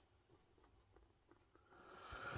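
Barely audible scratching of a Waterman Carene fountain pen's 18-karat gold medium nib writing on notepad paper.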